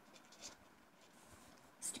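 Faint scratching of a marker pen writing on a sheet of paper, a few short strokes.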